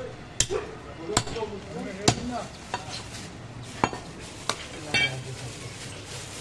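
A butcher's blade striking a wooden chopping block while cutting goat meat, in about seven sharp, irregular knocks.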